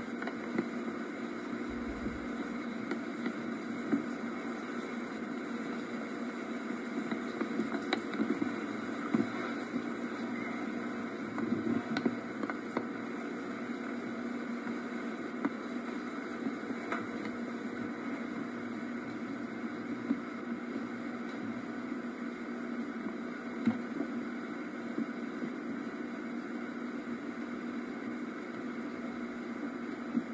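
Steady hum and hiss of an old camcorder videotape soundtrack, with a few faint clicks scattered through it.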